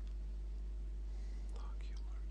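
A man's faint whisper, breathy and brief, about a second and a half in, over a steady low electrical hum.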